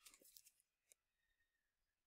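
Near silence, with two or three faint clicks in the first second.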